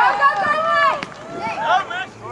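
High-pitched voices shouting and calling out, several overlapping, loudest in the first second and then fainter calls.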